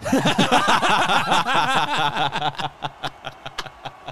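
Men laughing together, loud and overlapping for the first couple of seconds, then dying down into scattered chuckles.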